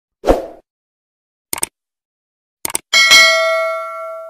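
Sound effects for a subscribe-button animation. A short thump is followed by two quick double clicks about a second apart, then a loud bell-like ding that rings out.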